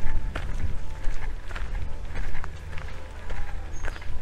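Footsteps walking on a dirt path, about two steps a second, over a low rumble.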